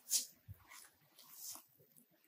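Short, soft rustles of a patchwork cloth quilt being handled and hung up: a brief burst just after the start and a few more up to about a second and a half in.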